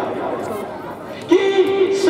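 A man's voice amplified through a microphone and loudspeaker, dropping away briefly in the middle and resuming strongly near the end.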